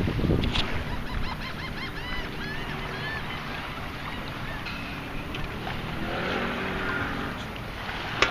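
A long-handled metal-detecting sand scoop sloshing through shallow water as it is swept under a floating dollar bill, with wind on the microphone.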